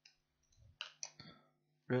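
A handful of sharp computer mouse and keyboard clicks while the text tool is picked and the first letters are typed, the busiest stretch falling in the middle second. A faint steady low hum runs underneath.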